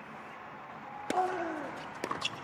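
A tennis serve: a single sharp crack of racket strings on the ball about a second in, with a short grunt falling in pitch right after it. Under it is a steady low hum from the waiting crowd.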